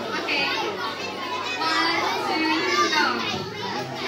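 Crowd of children's voices chattering and calling out all at once in a large hall.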